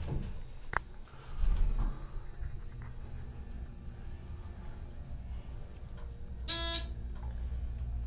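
ThyssenKrupp elevator car travelling up one floor with a low steady hum, a click about a second in and a low thump as it gets moving. About six and a half seconds in, a single short buzzy electronic beep sounds as the car arrives at the floor.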